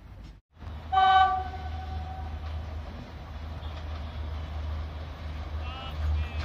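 Train horn sounding one loud blast about a second in, after a brief gap in the sound, then fading away over about a second. A steady low rumble runs underneath.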